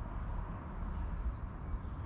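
Outdoor background: a steady low rumble with a few faint, high bird chirps.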